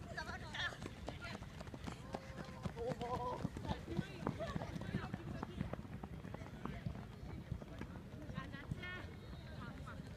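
Soccer players shouting calls to one another across the pitch during play, in short bursts, with scattered knocks of kicks or footsteps over a steady low rumble.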